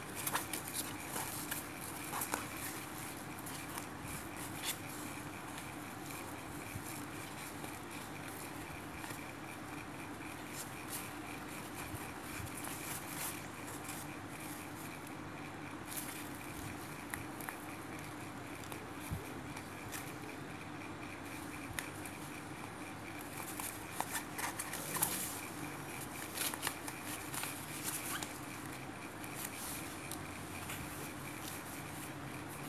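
Faint rustling and small scattered clicks of fabric and thread being handled as a zipper is hand-stitched into a bag lining, busiest near the start and again near the end, over a steady background hum.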